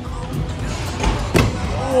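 Background music, with one sharp slam about one and a half seconds in: a stunt scooter landing on the concrete.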